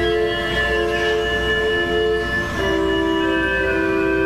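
Organ playing slow, held chords, moving to a new chord about two and a half seconds in.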